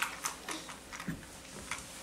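Faint, irregular clicks and taps of small plastic toy pieces being handled with magnet-tipped fishing rods, about five sharp ticks in two seconds.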